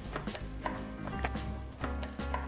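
Hands kneading crumbly oat dough, pressing and rubbing it against the bottom of a plastic bowl, with several soft knocks over steady background music.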